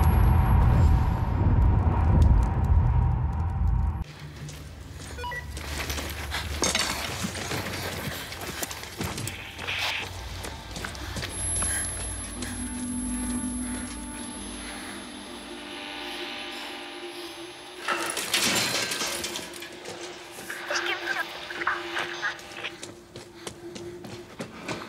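Film soundtrack: a loud, deep rumble that cuts off suddenly about four seconds in, then a quieter mix of music, scattered knocks and clicks, and a voice.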